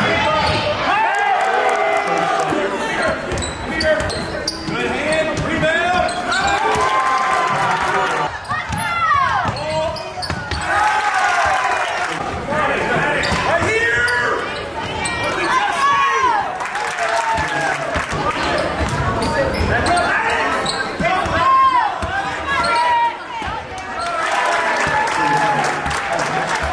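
A basketball bouncing on a hardwood gym floor during play, under a steady stream of indistinct voices from players and spectators, all carrying the echo of a large gym.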